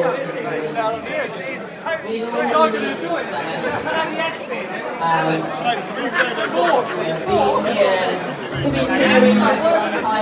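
Chatter of a group of people talking over one another at close range, with several overlapping voices and no single speaker standing out.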